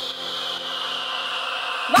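Electronic dance music transition: a hissing noise sweep falling slowly in pitch over sustained low tones, the beat dropped out, until new music cuts in right at the end.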